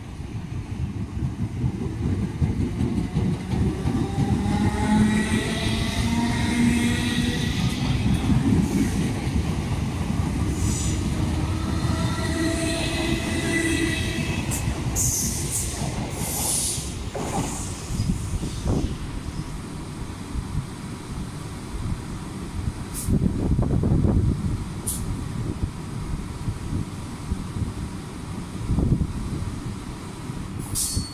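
Southern Class 455 electric multiple unit pulling away, its traction motors whining in several tones that climb in pitch as it accelerates, over a heavy rumble of wheels on the rails. In the second half the whine is gone, leaving rail rumble with a few sharp high squeals and clanks.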